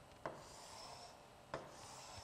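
Pen stylus on an interactive whiteboard screen as words are underlined: two light taps, each followed by a faint scratchy rub of the tip sliding across the glass.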